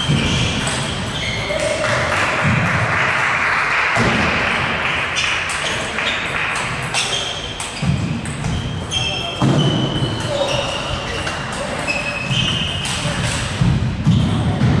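Table tennis balls clicking off paddles and tables in a reverberant sports hall, with several tables in play. The clicks are irregular and sharp, with short high squeaks among them and people's voices underneath.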